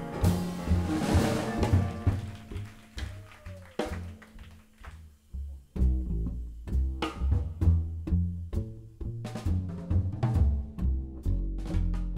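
Live jazz band playing an instrumental passage on piano, upright double bass and drum kit, with no vocals. A cymbal crash at the start rings away into a sparse, quieter stretch, then the bass and drums come back in strongly about six seconds in.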